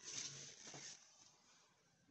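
Near silence: a few faint soft sounds in the first second, then nothing.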